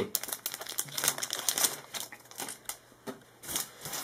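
Foil wrapper of a Magic: The Gathering booster pack crinkling as it is opened by hand: a dense run of crackles for about two seconds, then sparser crackles and clicks toward the end.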